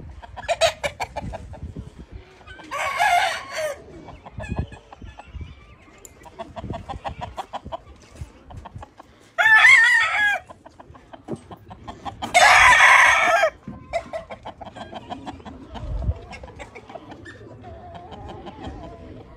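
Gamecocks crowing three times, each crow loud and about a second long, with softer clucks and clicks in between.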